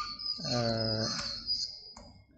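A man's drawn-out, steady-pitched "ahh", a hesitation sound lasting under a second, with a single click near the end.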